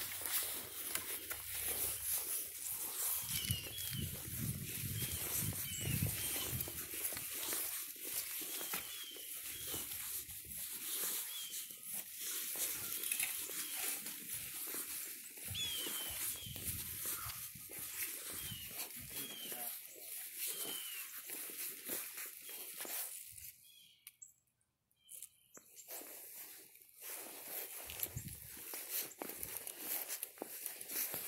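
Rustling and footsteps on grass and leaves with irregular handling knocks, and faint short high chirps every second or two. The sound drops out almost entirely for about two seconds near the end.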